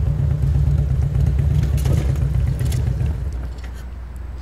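Cruiser motorcycle engine running at low speed as the bike rolls slowly to a stop, a steady low rumble. A little over three seconds in the rumble drops off sharply as the bike tips over in a stop made with the head already turned.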